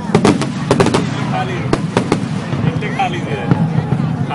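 Aerial fireworks bursting: a string of sharp bangs and crackles, densest in the first second, then scattered single cracks. People's voices are heard between the bangs.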